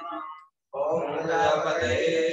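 A man's voice chanting Vedic Sanskrit mantras for the offerings into a havan fire. The sound cuts out completely for a moment about half a second in, then the chant resumes.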